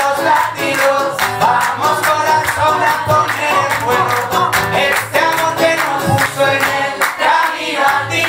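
Live acoustic song: a man singing into a microphone while strumming an acoustic guitar.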